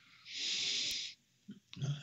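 A man's audible breath through the nose, one noisy rush lasting just under a second, followed near the end by a couple of short mouth clicks.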